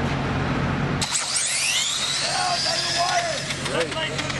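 Electric 1/10-scale RC drag cars launching about a second in, their motors letting out a high whine that rises quickly in pitch as they accelerate down the track. Spectators' voices follow in the second half.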